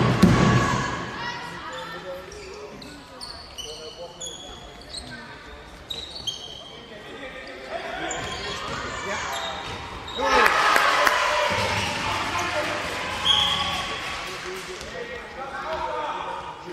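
Handball match play in a large sports hall: a handball bouncing on the hall floor, shoes squeaking, and players' and onlookers' shouts echoing, loudest about ten seconds in.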